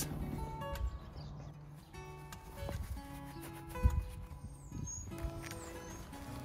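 Background music of steady, changing notes, with a few soft knocks and a low thump about four seconds in.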